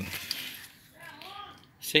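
A man speaking Portuguese: a word trails off at the start, then a pause of about a second and a half with only faint background sound, and speech resumes near the end.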